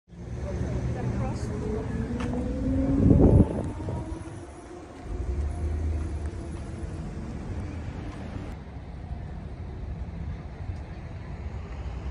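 Street traffic: a car passes close by, loudest about three seconds in, over a steady low rumble of road traffic.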